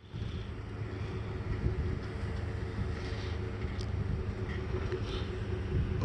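Vehicle engine idling steadily, a low even hum.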